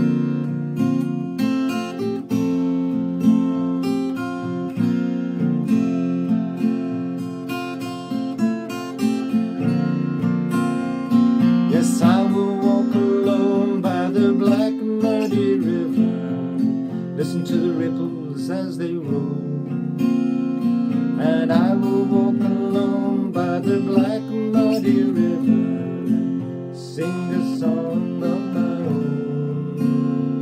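Acoustic guitar strummed steadily, with a man's voice singing over it from about a third of the way in, in two sung lines with a short guitar-only gap between them.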